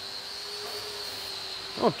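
Steady workshop background: a faint low hum with a thin high-pitched whine over it, no engine running and no spraying. A man's voice starts near the end.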